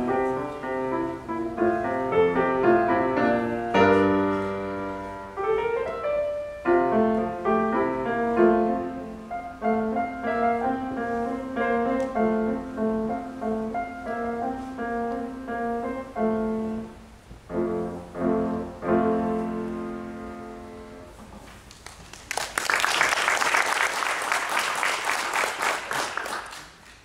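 Grand piano played solo, a flowing piece that closes with a held chord dying away. About three-quarters of the way through, audience applause breaks out and runs to the end.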